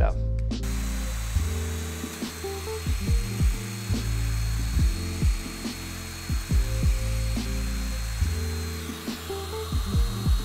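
Festool Domino DF500 joiner's motor running with a thin, steady high whine as it plunge-cuts a mortise into a 45° mitered plywood edge; it starts about half a second in. Background music with a plucked bass line plays over it and is the louder sound.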